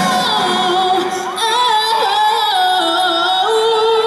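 A woman singing live into a microphone: long held notes with vibrato and runs that slide between pitches, with little else heard beneath the voice.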